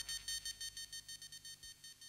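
Music fading out: a synthesizer's high, beeping tone pulses rapidly, about seven times a second, growing fainter until it dies away at the end of a track.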